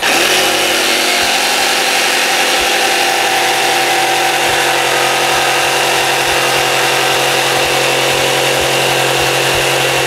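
RYOBI cordless jigsaw with a fine-toothed dual-cut blade sawing through a plywood board: a loud, steady motor and blade sound that starts at once and runs without a break, a slow, smooth cut.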